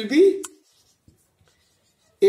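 Marker pen writing on a whiteboard: a short high scratch about half a second in, then faint, scattered strokes.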